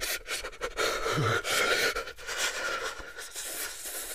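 A man shivering from cold: quick, shaky breaths broken up by many short rapid clicks, with a brief low voiced shudder about a second in.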